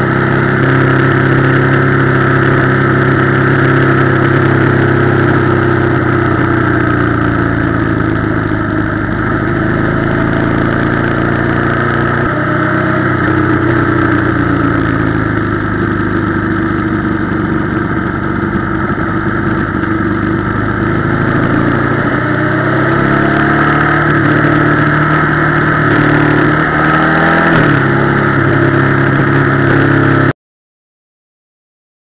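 Ducati Monster 696's air-cooled L-twin engine running steadily while riding, heard close up, with its pitch rising now and then as it accelerates.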